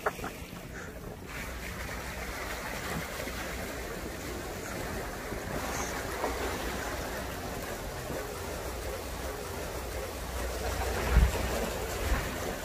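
Steady rush of wind and water aboard a sailing catamaran under way: waves washing against the hulls, with wind on the microphone. A single low thump sounds near the end.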